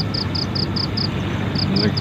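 An insect chirping in short, high, evenly spaced pulses, about five a second, pausing briefly about a second in, over a steady low background rumble.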